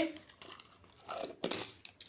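Cotton wool being pulled apart and handled: a run of short rustling, crinkling and tearing sounds close to the microphone, busiest in the second half.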